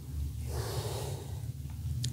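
A single breath out close to the microphone, a soft even rush lasting about a second and a half, over a low steady hum.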